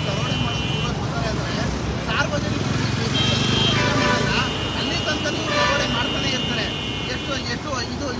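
Road traffic at a toll plaza: vehicle engines running with a steady low rumble, under voices. Long, steady high-pitched tones come in during the first second, briefly about three seconds in, and again for about three seconds from four seconds in.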